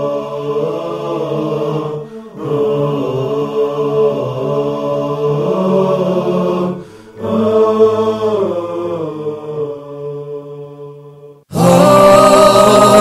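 Unaccompanied vocal chant in the style of a nasheed, with voices holding a low drone under a slow melody, sung in three phrases with short breaks about two and seven seconds in. Near the end it cuts sharply to louder, fuller music.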